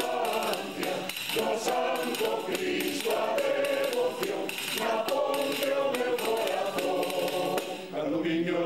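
Mixed choir of men's and women's voices singing in harmony.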